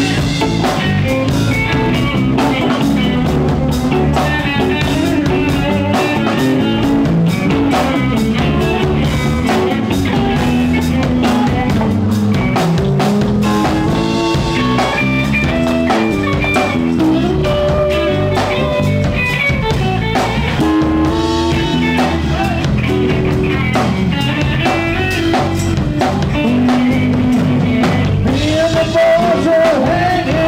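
Live blues-rock band jamming: drum kit keeping a steady beat under electric guitars, with melodic lead lines moving over the top.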